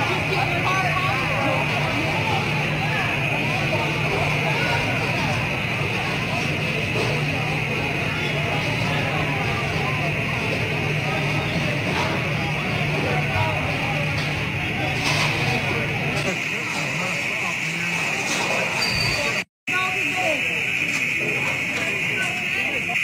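Several people talking indistinctly, with a steady high-pitched sound running underneath throughout.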